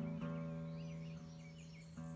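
Acoustic guitar chord left to ring and slowly fading, with small songbirds chirping over it.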